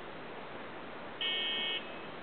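A single short beep, a buzzer- or horn-like tone lasting just over half a second, a little past halfway through, above a steady background hiss.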